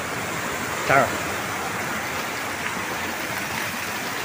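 Waterfall rushing steadily: the constant roar of water pouring over rock close by.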